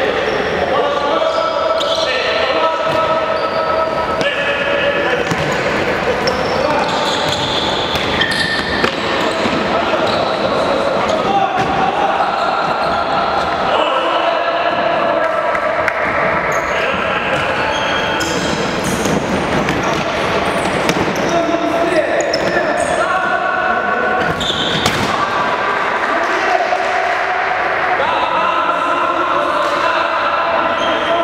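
Futsal ball being kicked and bouncing on a wooden sports-hall floor amid indistinct players' voices, all echoing in the large hall.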